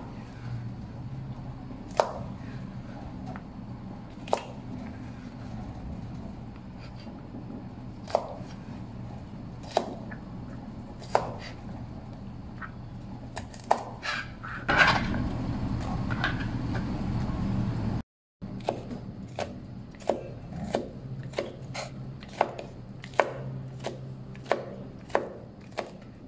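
Kitchen knife chopping long beans on a plastic cutting board: single sharp knocks of the blade on the board every second or two over a low steady hum, with a louder rustling stretch around the middle. After a cut, the chopping comes faster, about two knocks a second.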